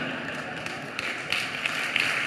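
Audience laughing and murmuring, with a few scattered claps in the second half.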